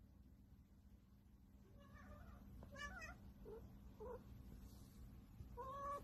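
A cat meowing faintly several times in short calls, with a slightly louder rising meow near the end.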